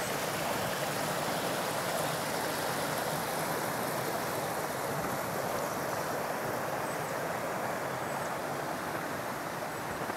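Small shallow creek running over rocks, a steady rush of water that grows a little fainter near the end.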